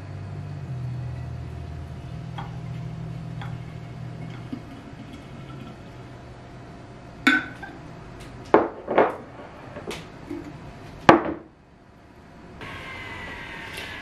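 Celery juice poured from a glass measuring cup into a glass jar, a steady low pouring sound for the first few seconds. About seven seconds in come several sharp clinks and knocks of glassware being set down and handled, the last one about eleven seconds in.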